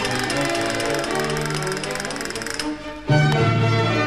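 Castanets playing fast rattling rolls over a baroque chamber orchestra. Near the end the music drops away briefly, then the orchestra comes back in louder with strong low notes.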